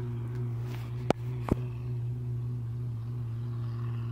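A steady low hum, with two sharp clicks about a second and a second and a half in.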